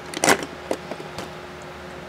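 LED bulbs knocking against each other in a cardboard box as a hand moves them: a short rattle just after the start, then a few light clicks.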